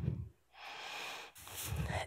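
A person's breath and low rumbles on a close microphone, with a brief cut to silence about a third of a second in.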